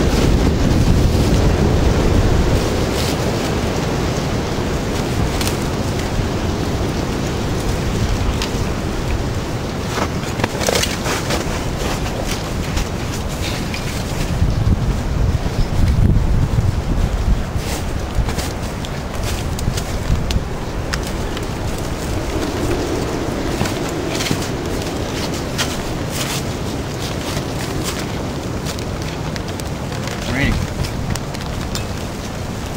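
Wind buffeting the microphone with a heavy low rumble, over scattered sharp crackles and snaps from a small twig fire being fed.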